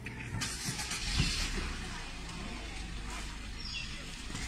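A motor vehicle's engine running with a steady low rumble, with a brief rush of noise in the first second and a half.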